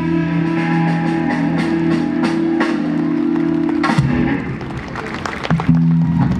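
Live band ending a song: a loud held chord with drum and cymbal hits over it, stopped by a hit about four seconds in, then the chord struck again near the end.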